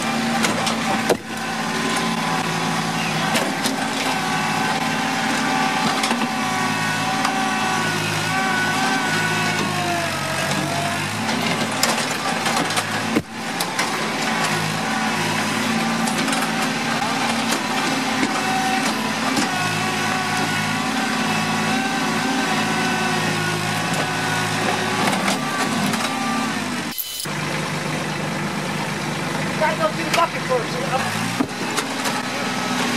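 Small tractor's engine running steadily while its front-end loader lifts a concrete slab. Its pitch dips and recovers around the middle. A short knock comes about a second in as the slab is dropped and fractures.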